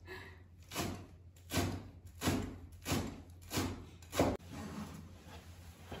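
A Chinese cleaver chopping on a cutting board, about six strikes at a steady pace of roughly one every two-thirds of a second, stopping about four seconds in. It is chopping vegetable filling for dumplings.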